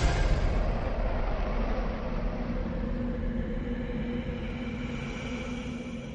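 Low, steady rumbling drone with a few faint held tones, slowly fading out after a loud hit.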